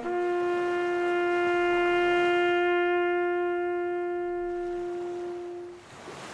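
A solo brass horn holds one long, steady note for almost six seconds, swelling slightly and then fading out near the end, as in a slow bugle call.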